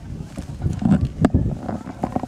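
Hooves of galloping racehorses drumming on turf: an irregular run of thuds that is loudest just past the middle.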